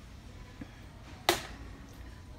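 Steady low background rumble of a large store, broken once a little past halfway by a single sharp knock.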